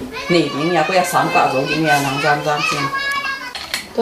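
Speech: a woman and a girl talking in Zomi, with a couple of short clicks near the end.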